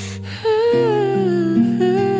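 Music: a woman singing a slow, soft melody over sustained accompaniment, her voice coming back in about half a second in after a short pause.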